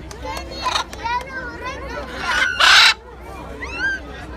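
A macaw gives one short, loud, harsh squawk a little past halfway, over the chatter of a crowd and children's voices.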